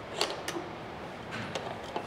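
A few light clicks as the Aurus Senat's fuel filler flap is swung open by hand and the fuel cap behind it is gripped.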